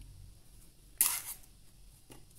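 A single short, sharp scraping crunch about a second in as the cold-porcelain figure is pressed down onto a styrofoam block; otherwise only faint room tone.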